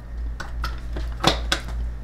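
A few light clicks and taps, about four in two seconds, over a steady low hum.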